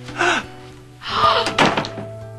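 Soft background music with held notes, and a wooden door thunking shut about a second and a half in.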